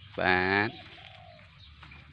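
A man's voice holds one drawn-out syllable, then a faint, short, low bird call slightly falling in pitch sounds about a second in.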